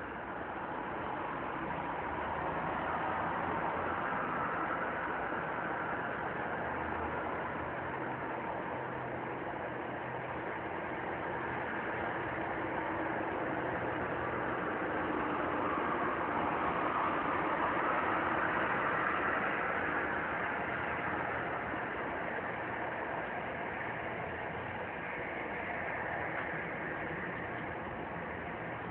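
An engine running steadily, with a low hum under a hazy mid-range drone that slowly swells and eases.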